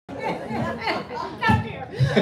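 Several voices talking over one another in a large room, with a brief cut-out in the sound right at the start.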